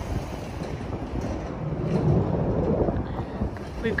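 Wind buffeting the microphone: a rough, uneven low rumble that swells around the middle and eases off again.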